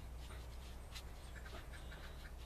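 Faint, soft breathy puffing or panting over a low steady hum.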